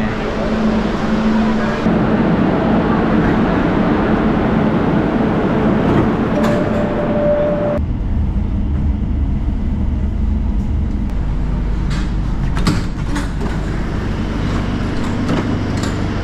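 Metro station noise for the first half, with a short steady tone about six seconds in, then an abrupt cut about eight seconds in to the low, steady rumble of a Barcelona Metro L5 train running, heard from inside the car.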